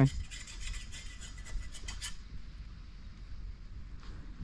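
Faint irregular rustling and light clicking, thickest in the first two seconds and then thinning out, over a steady low rumble.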